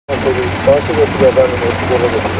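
People's voices over the steady low hum of an idling minibus engine.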